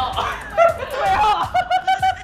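Loud laughter that ends in a quick run of repeated 'ha' bursts.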